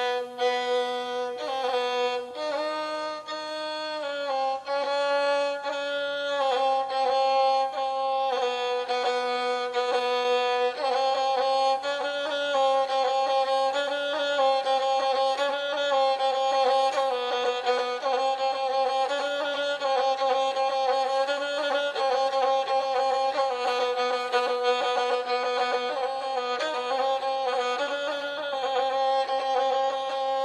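Gusle, the single-string bowed folk fiddle of South Slavic epic song, playing a solo instrumental prelude before the singing begins. It is a single line of short notes that shift in small steps within a narrow range.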